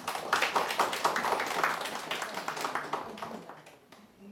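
A small audience applauding: a dense patter of hand claps that fades away near the end.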